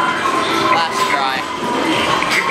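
Steady, loud arcade din: electronic game sounds and jingles from many machines, mixed with indistinct voices in the hall.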